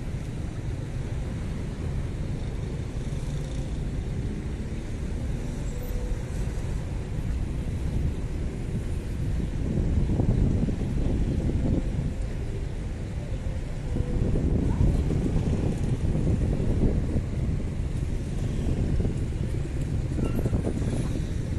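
Street ambience of road traffic passing along a city avenue, with wind rumbling on the microphone. It grows louder about ten seconds in and again from about fourteen seconds.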